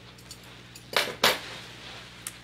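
Metal scissors clicking twice, two sharp metallic sounds about a quarter second apart about a second in, after a few faint ticks.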